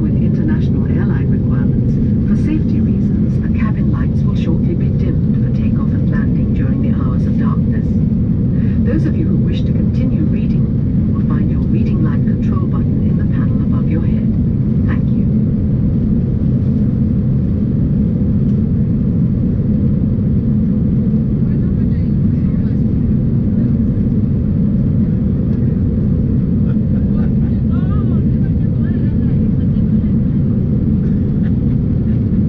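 Steady low cabin rumble inside an Airbus A350-900 airliner at a window seat. Faint voices can be heard over it during the first half.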